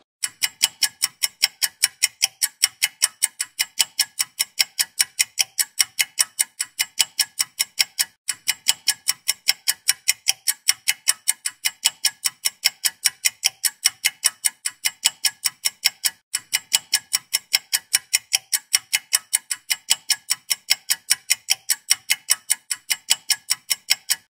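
Clock-ticking sound effect, even ticks at about four a second, with brief breaks about 8 and 16 seconds in. It serves as a countdown while a quiz question waits for an answer.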